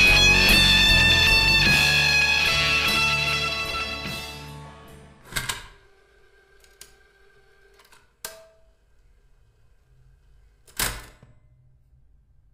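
Instrumental post-rock with layered electric guitars, fading out over the first few seconds as the track ends. After that come a few sparse sharp knocks, about three seconds apart, with faint ringing tones hanging after the first.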